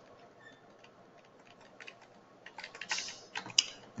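Computer keyboard typing: a run of quick key clicks, few and faint in the first half and coming thick and fast in the second half.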